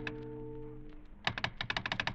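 A held music chord fades out in the first second. Then a fast run of sharp clicks, about a dozen a second, comes from a telephone's switch hook being jiggled to raise the operator.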